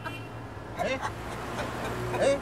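Steady low drone of a vehicle's engine heard from inside the cab, with a man's short laugh about a second in.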